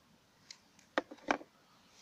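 Mostly quiet, with a soft click about half a second in and three sharp clicks close together around the one-second mark: handling noise from a small plastic bottle.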